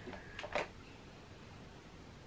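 Quiet room tone, with a few faint ticks in the first second.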